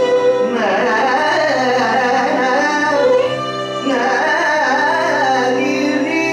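Carnatic music in raga Kalyani: a male voice and violin trace a gliding, ornamented melodic line over a steady drone.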